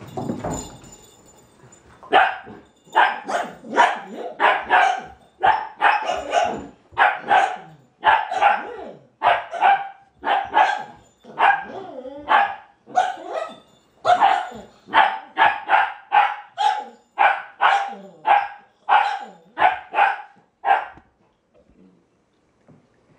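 A dog barking repeatedly during play, about two short, fairly high barks a second from about two seconds in until near the end: demand barking for the ball.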